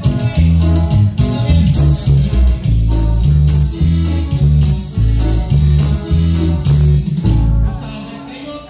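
Live band dance music, with a bass line stepping between notes about twice a second under guitar; the music dips briefly near the end.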